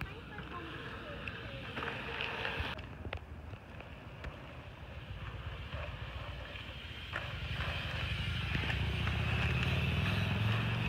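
Outdoor ambience with wind buffeting the microphone and faint voices in the distance. The low rumble grows louder after about seven seconds as a BMX bike's tyres roll over the dirt close by.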